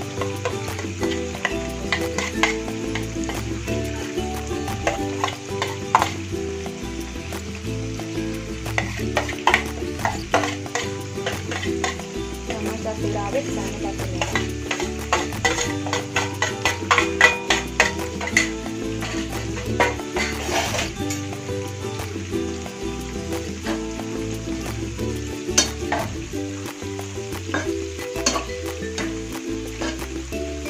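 Chopped garlic, shallots and red chilies sizzling as they fry in hot oil in a wok, with a metal spatula scraping and clicking against the pan as they are stirred, over background music.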